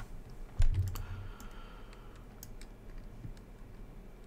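Scattered computer keyboard and mouse clicks at a desk, with one louder short low sound about half a second in.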